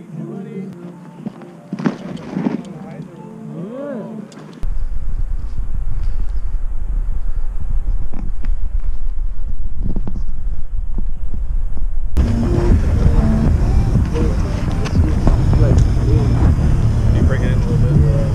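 Music for the first few seconds, then a sudden cut to a loud, steady low rumble. Later another cut brings people's voices over outdoor noise.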